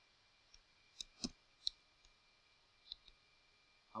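Faint computer keyboard keystrokes and mouse clicks, about half a dozen short clicks spaced unevenly, against near silence.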